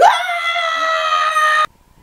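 A man's voice holding one high, steady note, swooping up into it at the start and cutting off suddenly after about a second and a half.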